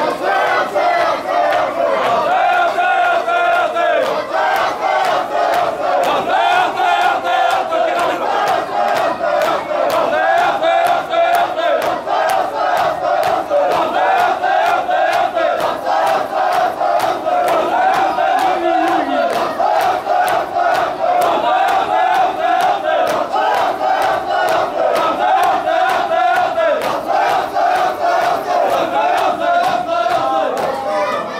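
Shia mourners performing matam: a crowd of men chanting loudly in unison while open hands strike chests in a steady, repeated rhythm of sharp slaps.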